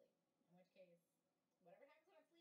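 Near silence, with very faint voices in the background.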